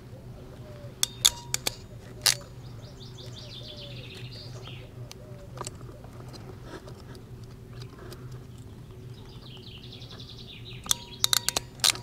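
Hand crimping tool clicking as its jaws squeeze a new terminal onto a wire: a few sharp clicks about a second in, then a quick run of clicks near the end.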